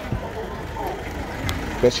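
Street ambience with a steady low rumble, faint distant voices and a single sharp click about one and a half seconds in.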